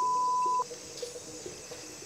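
Television censor bleep: a single steady 1 kHz tone lasting about two-thirds of a second, blanking out a spoken word just after a cry of pain. Then faint background ambience.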